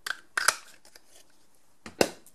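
Hand-held 3/4-inch circle craft punch cutting through white cardstock: a short crunch about half a second in, followed near the end by a sharp click.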